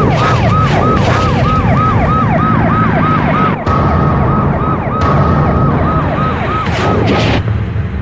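Emergency vehicle siren in fast yelp mode, a falling tone repeating about three times a second over a low rumble. It breaks off briefly about three and a half seconds in, then carries on and stops about seven and a half seconds in.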